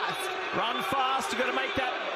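Male television commentator's voice calling the closing stretch of a track race.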